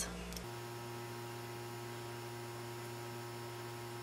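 Steady electrical hum with a few faint steady tones and nothing else: the mains-hum room tone of the recording.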